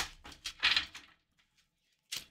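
A deck of tarot cards being handled: a few short clicks and a brief rustle of card stock in the first second, then near silence.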